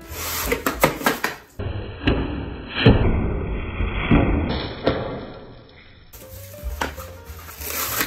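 Plastic cling wrap being pulled off its roll and handled, giving crackling, crinkling rustles with sharp clicks.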